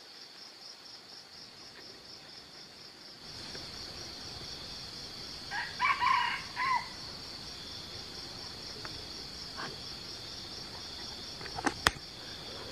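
A red junglefowl cock crowing once, a short broken crow about six seconds in, over a steady high pulsing insect chorus. A couple of sharp clicks come near the end.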